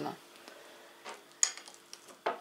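Cutlery tapping once on a ceramic plate, a single sharp clink about one and a half seconds in, followed by a few faint ticks.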